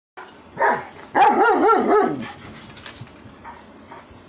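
German Shepherd-type dog vocalizing: a short call, then a longer, louder call whose pitch wobbles up and down several times and falls away at the end.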